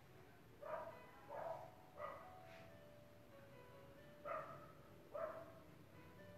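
A dog barking faintly: five short barks, three in quick succession and then two more, over quiet background music.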